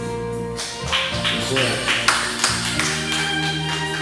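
Enka karaoke backing track playing with sustained instrumental chords, a man singing into a microphone over it, and a quick run of sharp percussive hits in the first half.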